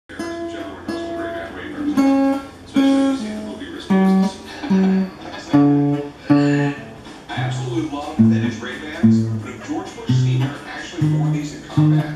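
Harmony H170 steel-string acoustic guitar played with the fingers: a slow line of single plucked notes, about one a second, moving mostly downward in pitch.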